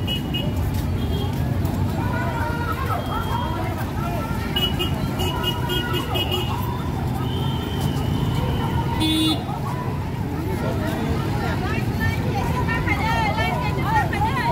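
Street traffic with the chatter of a walking crowd, and vehicle horns tooting a few times around the middle, the last a short blast about nine seconds in.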